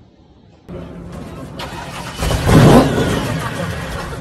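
Supercharged muscle-car engine being started: its sound builds from about a second in, is loudest as it catches and revs about two seconds in, then keeps running.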